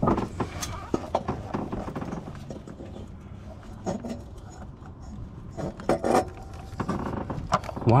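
Clinks, knocks and scraping of metal as a stainless steel log-style turbo manifold is worked into place against the engine's cylinder head.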